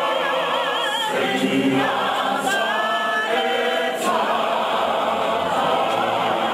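A congregational choir singing a hymn a cappella, many voices holding long sung notes together. In the first second one high voice with a wide vibrato rides over the choir.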